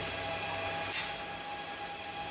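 Steady whir and hum of rack-mounted network equipment running, with a few constant tones over an even hiss. A brief soft hiss about a second in.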